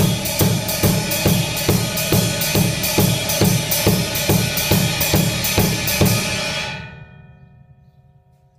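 Ride cymbal played in a blues shuffle pattern over a steady bass drum beat, about two to three kicks a second. The playing stops near the end and the cymbal rings out and fades.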